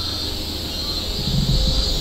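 Steady, high-pitched drone of insects in the forest, with a low rumble underneath and a faint murmur of a voice a little past the middle.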